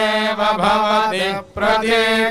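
Vedic mantras chanted in Sanskrit, recited on an almost level pitch with a short break for breath about one and a half seconds in.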